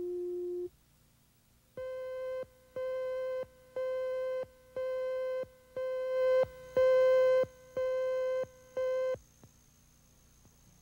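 Countdown beeps on a videotape leader. A short lower tone sounds first, then eight beeps of one pitch, about one a second, each lasting most of a second, in step with the numbered countdown slate.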